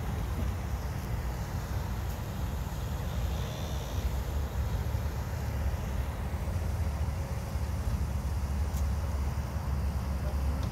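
Steady low rumble of wind buffeting the microphone, with a faint high whine briefly about three and a half seconds in.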